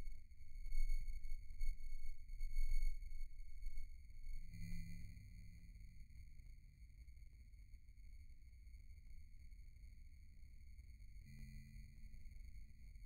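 A steady high-pitched whine with a stack of overtones over a low, uneven rumble; the rumble is stronger at first and drops away about four seconds in, leaving the thin whine.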